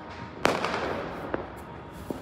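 Firework bang about half a second in that trails off, followed by a fainter pop about a second later.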